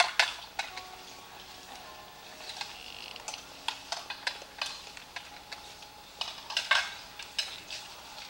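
Scattered sharp clicks and clinks at an irregular pace, the loudest right at the start and a cluster about six and a half seconds in, over faint steady music.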